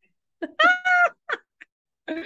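A woman's high-pitched squeal of laughter: one held note about half a second in, then a couple of short laughing breaths.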